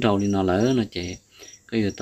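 A man talking, with an insect chirping in the background in short, high, evenly repeated chirps about twice a second.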